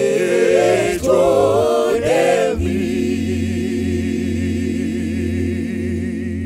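Mixed male and female a cappella vocal group singing in close harmony through microphones. About two and a half seconds in, the voices settle on one long held chord with wavering vibrato.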